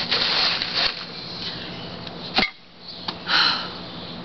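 Rustling and handling noises in short bursts, with a sharp click about two and a half seconds in, over a faint steady hum.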